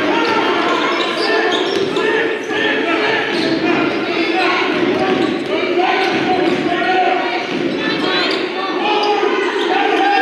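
A basketball bouncing on a hardwood gym floor during play, amid the chatter of many voices echoing in a large hall.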